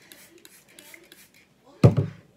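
Faint rustling and rubbing of fingers working through wet curly hair, then a short loud thump near the end.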